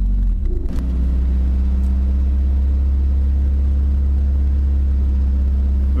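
A truck engine is brought up from idle to a raised, steady idle, heard inside the cab. There is a brief rise in pitch under a second in, then a loud, steady low rumble.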